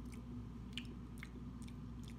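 Soft mouth and lip clicks as a spoonful of creamy dressing is tasted, a few faint clicks over a steady low room hum.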